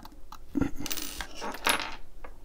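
Small metal vaping tools and parts clinking as they are handled and set down on a wooden table: a few light, sharp metallic clicks with a short ring.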